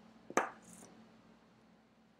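A single sharp tap or click about a third of a second in, followed by a faint brief scratch, then quiet room tone.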